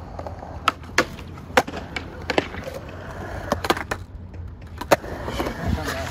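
Skateboard wheels rolling on concrete with a low, steady rumble, broken by about half a dozen sharp clacks of the board and trucks striking the concrete and a metal bumper rail during a trick attempt.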